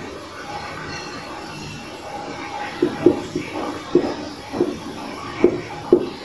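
Marker writing on a whiteboard: a steady hiss, then from about halfway a series of short squeaks and taps as letters are stroked onto the board.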